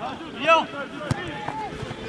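A short shout from a player or spectator about half a second in, with fainter calling voices after it and a single sharp knock about a second in.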